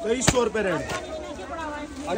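One sharp knock about a third of a second in, with voices talking throughout.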